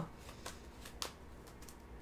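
Tarot cards being handled, heard as a few faint soft clicks spaced about half a second apart.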